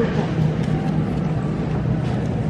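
Shopping cart rolling over a tiled supermarket floor: a steady low rumble and rattle, with faint voices in the background.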